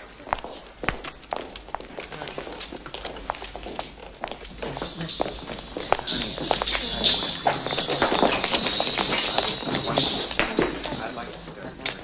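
Footsteps and small clicks and clatter on a hard floor, under indistinct murmured conversation of dinner guests that swells in the second half.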